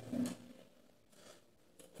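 Faint light clicks and scrapes of small metal hardware being handled.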